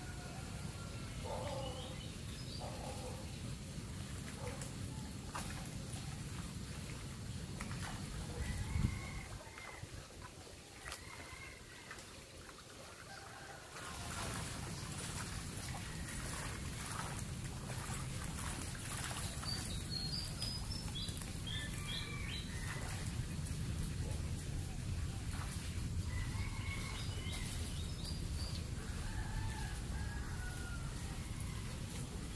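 Small birds calling in short, scattered chirps over a steady low outdoor rumble, with one sudden loud thump about nine seconds in.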